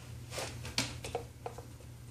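A few brief, faint rustles and handling noises over a low steady hum.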